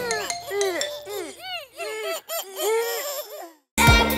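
Several high-pitched cartoon voices giggling together in quick, overlapping rise-and-fall bursts that fade out. After a short silence, an upbeat children's song starts just before the end.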